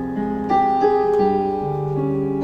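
Slow, gentle instrumental music on an electric keyboard: held chords and single melody notes changing about every half second, with no singing.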